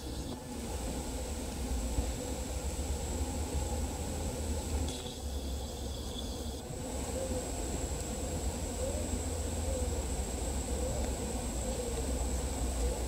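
A honeybee colony buzzing as it forages on the blossoms of a flowering tree: a steady, slightly wavering hum over a low rumble.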